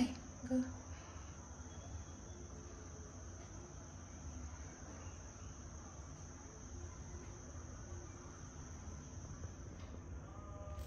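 An insect, a cricket, trilling steadily at a high pitch, over a low hum. Two short knocks come in the first second.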